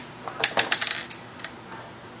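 Small steel screw clattering on a desktop: two sharp clicks about half a second in, then a quick run of smaller ticks as it bounces and settles.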